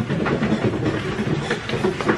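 Rhythmic puffing and chugging mouth sounds from two men, like an imitation of a train.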